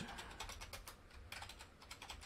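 Computer keyboard being typed on: a run of quick, faint keystroke clicks, pausing briefly about a second in and then going on.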